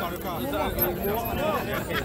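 Several people talking at once close by, over the chatter of a large crowd.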